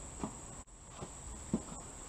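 Insects chirring as one steady high-pitched tone, with a few faint clicks.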